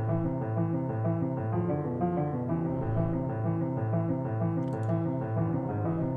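Sampled piano melody in a minor key over low bass notes, rendered to audio and played back pitched down an octave. It sounds dark and dull, its high end cut with EQ and a lo-fi preset.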